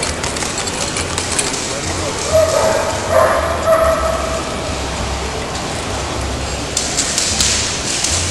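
A dog barking twice, about two and three seconds in, over crowd chatter and a low steady hum in a large echoing hall.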